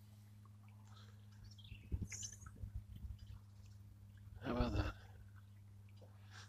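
Faint steady low hum of a small 12-volt electric outboard trolling motor pushing the boat along on its lowest setting, with a few soft knocks about two to three seconds in.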